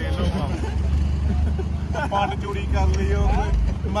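Steady low drone of the vehicle hauling the trolley, with road noise as it rolls along, and men's voices chatting over it in the second half.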